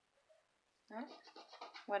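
A scratch-off lottery ticket being scratched, a quick run of short rasping strokes starting about a second in as another winning number is uncovered.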